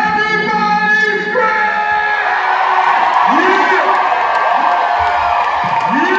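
A live band and vocal end the song on one held note lasting about two seconds, then the theatre crowd cheers and whoops, with shouted voices over it.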